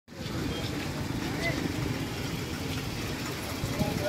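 Murmur of a crowd's voices over street traffic, with a car driving up and stopping close by. Faint scattered talk runs throughout, and a voice grows clearer near the end.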